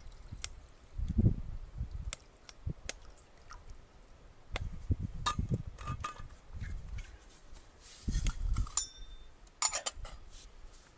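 Metal camp cookware clinking and tapping as a pot and cup are handled on a wood-burning camp stove, with a sharp ringing clink shortly before the end and a quick cluster of clinks at the very end. Three spells of low rumbling wind gusts buffet the microphone.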